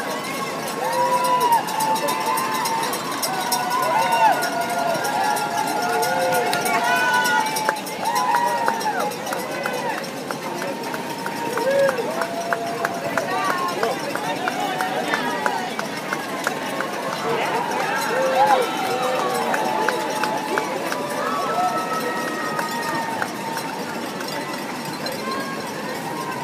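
Roadside spectators cheering and calling out over and over to passing marathon runners, several voices overlapping, over the patter of many runners' footsteps on the pavement.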